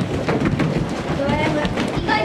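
Quick footfalls of bare feet stepping and hopping on a wooden floor, with children's voices and chatter; a voice rises over the steps in the second second.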